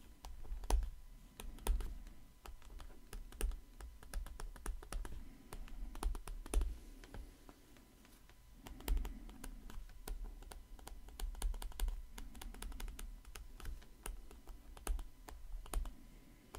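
A stylus pen clicking and tapping on a tablet screen while writing by hand: irregular light clicks, several a second, with brief pauses between words and low bumps of the hand or pen.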